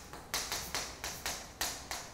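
Chalk writing on a chalkboard, heard as a quick run of about seven sharp taps as a short string of numbers and commas is put down.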